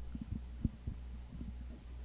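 A steady low hum with a dozen or so faint, irregular low knocks scattered through it.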